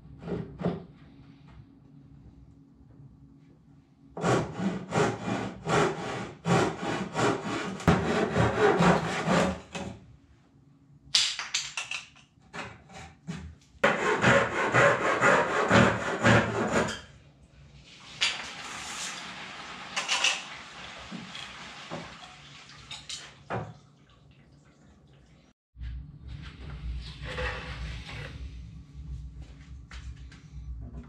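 Handsaw cutting through a wooden batten in quick back-and-forth strokes, in two runs: a longer one of about six seconds and a shorter one of about three seconds. Lighter scraping follows, and a low steady hum comes in near the end.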